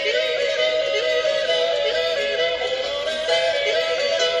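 A man yodelling in an Alpine folk song, his voice flipping quickly back and forth between neighbouring notes over instrumental backing.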